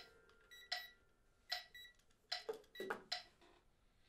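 Digital metronome giving about six short electronic beeps at uneven spacing as it is being set by hand, not a steady beat.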